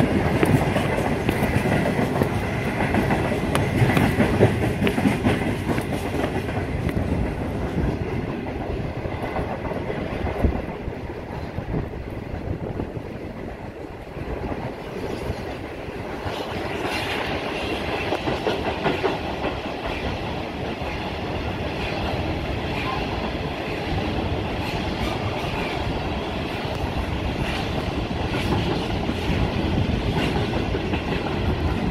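Freight train of covered hopper wagons rolling past on the rails, a steady run of wheel and wagon noise, dipping a little about halfway through before building again.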